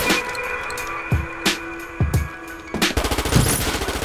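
Gunfire from a film soundtrack: several single shots with sharp impacts, then a fast run of shots from about three seconds in, over background music.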